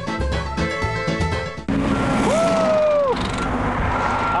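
Upbeat background music, then an abrupt cut to freeway traffic rushing close by. Over the traffic a single held tone sounds for about a second, rising at its start and falling at its end.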